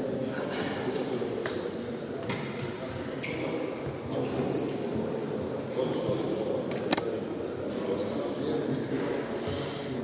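Indistinct voices murmuring in a large hall, with a few sharp clicks, the loudest about seven seconds in.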